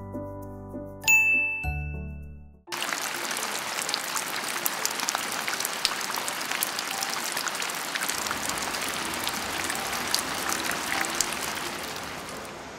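A short chiming jingle with a bright ding cuts off about two and a half seconds in. Steady rain follows, an even hiss dotted with many small drop ticks.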